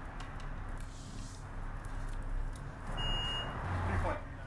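Water level meter beeping once, a steady high tone lasting about half a second, about three seconds in: the probe has touched the water surface in the well. Faint steady background noise under it.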